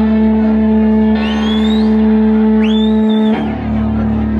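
Live band holding a sustained chord on guitar and upright bass that cuts off about three-quarters of the way through, as a song ends. Two rising whistles come over it, the second just before the chord stops.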